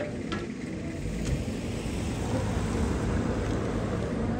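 Motor vehicle engine running steadily nearby: a low, even rumble with a faint hum.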